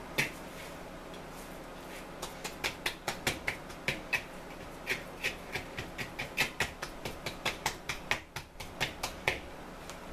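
Bread dough being rolled around by hand in an oiled wooden bowl to coat it with olive oil, making a run of short, sharp smacks, about three a second, from about two seconds in.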